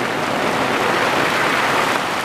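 Heavy rain pouring down on pine trees, grass and a paved road, a steady even hiss.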